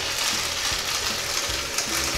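Urinal flushometer flushing: water rushing steadily through the urinal.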